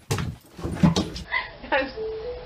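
A dog vocalizing in a few short, loud bursts, with knocks from a phone being moved. About a second in, the sound cuts abruptly to a different, duller recording.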